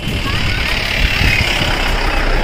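Road traffic on a bridge: a vehicle going past, a steady noisy rumble with no clear engine note.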